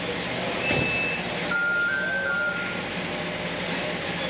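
Steady low hum of an idling vehicle engine. A sharp knock comes under a second in, and short electronic beeping tones sound through the middle.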